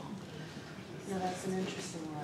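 Indistinct talking in a room, mostly in the second half: speech only.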